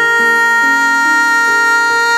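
A woman's voice holding one long sung note, with a Kawai piano playing beneath it, its lower notes changing about every half second.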